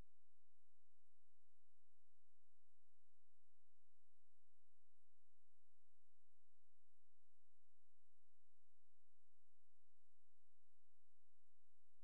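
Faint, steady electronic tone made of a few pure pitches held constant throughout, with no other sound.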